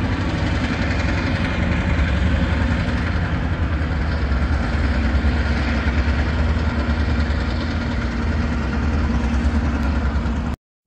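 Freight diesel locomotives running as they pull past, a steady low engine rumble that holds even throughout.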